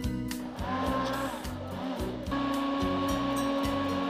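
Electric hand blender running in a plastic beaker, blending oats, curd and water into lassi. The motor's steady whine starts just after the beginning and changes pitch about halfway through, under background music with a steady beat.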